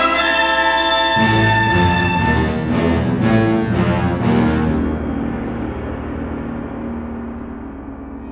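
Orchestral soundtrack music: dense held chords, a low entry about a second in, then a run of five heavy percussion hits in the middle before the texture thins to a held low note and fades down.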